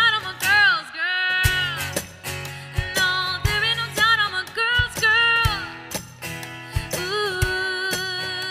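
A woman singing a country-pop song live with strummed acoustic guitar, holding several long notes. The guitar drops out briefly about a second in, then comes back in.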